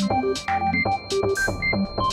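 Programmed electronic music: short synthesizer notes leaping between pitches over a quick pattern of percussive hits with falling-pitch drum sounds.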